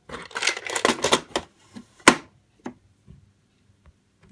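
Clicking and clattering of hard plastic sewing-machine parts being handled, with a sharp snap about two seconds in, then a few faint clicks.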